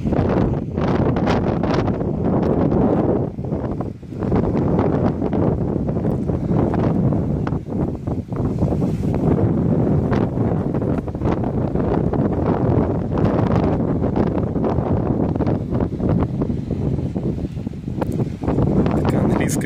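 Wind buffeting the camera's microphone: a loud, gusty low rumble that dips briefly about four seconds in.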